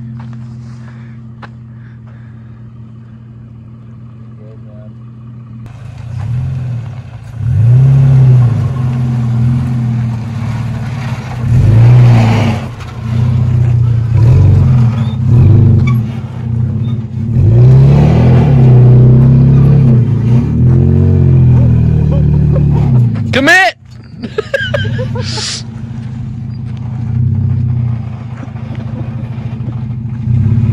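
Off-road truck engine running low and steady, then revved up and down again and again as the truck works over trail obstacles. It breaks off suddenly about three-quarters of the way through and settles back to a steady, quieter running note.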